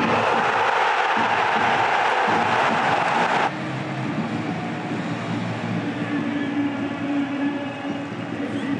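Stadium crowd cheering loudly after a goal, cut off abruptly about three and a half seconds in; after the cut, a quieter crowd background with a steady held drone.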